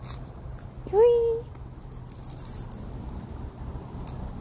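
A single short vocal sound about a second in that rises quickly and then holds its pitch briefly, like a quick questioning "hm?".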